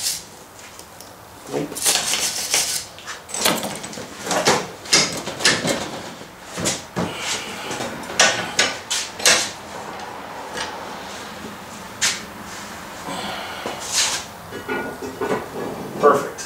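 Irregular metal clanks and knocks as a steel bracket is worked in a bench vise and handled, about a dozen sharp hits scattered over the stretch.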